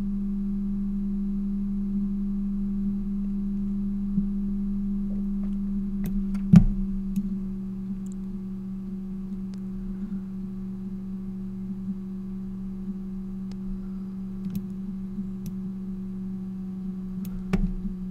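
A steady low hum with a fainter higher overtone, broken by a few faint clicks, the sharpest about six and a half seconds in.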